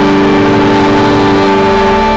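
Church organ holding a loud sustained chord, moving to the next chord at the end.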